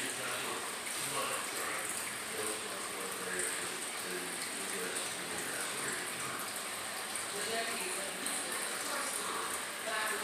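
Faint, indistinct voices over a steady hiss.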